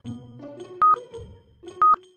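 Stopwatch countdown sound effect: a short, high beep once a second, twice here, over soft background music.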